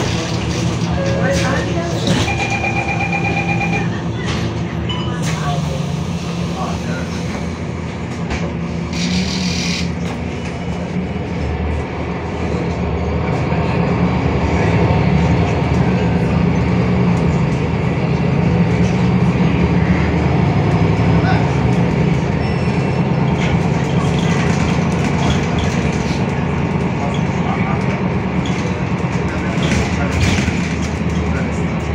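Interior sound of a MAN NL323F city bus on the move: its MAN D2066 LUH-32 diesel and ZF EcoLife automatic gearbox drone steadily, getting louder as the bus picks up speed about halfway through. A short beep comes about two seconds in, and a brief hiss about nine seconds in.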